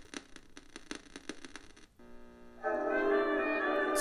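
A homemade haunted-radio prop's sound-effects board playing through its small speakers: an electrical-shorting effect of rapid crackling clicks. About two seconds in the crackle stops and the board moves straight on to its next track, a held musical chord that comes in faintly and grows louder shortly after.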